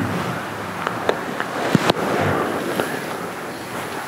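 Rustling clothing and shuffling of a congregation of worshippers rising together from prostration to sit on a carpeted floor, with scattered small clicks and knocks.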